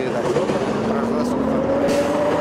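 Street traffic with a passing motor vehicle's engine accelerating, its pitch rising steadily from about halfway through.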